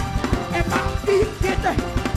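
Live gospel band music: a drum kit played with quick, busy hits and cymbals over electric bass, with a melody line above.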